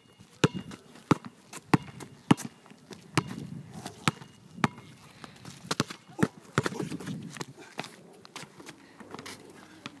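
A basketball dribbled on an outdoor asphalt court, sharp bounces coming about every half second at first, then less regularly.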